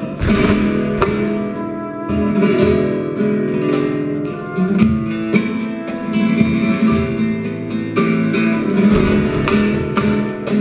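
Live flamenco music led by acoustic guitar, played by an ensemble with sharp percussive accents throughout.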